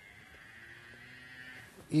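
Faint, distant animal call, a low drawn-out note held for about a second, over a quiet outdoor background.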